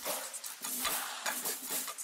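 Drill percussion loop previewed on its own: quick, irregular hat- and shaker-like hits with no bass underneath.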